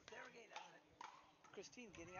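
Near silence: faint, distant voices.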